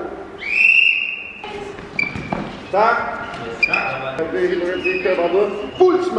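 A referee's whistle blown once, a single steady blast of about a second, followed by several people talking.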